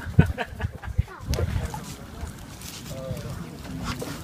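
Indistinct voices of people talking nearby, with a few short knocks near the start and about a second in, over a low rumble of wind or handling noise.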